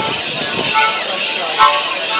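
A lively morris dance tune on a free-reed squeezebox, with the jingle of the dancers' leg bells as they step, and one heavier footfall thud near the end.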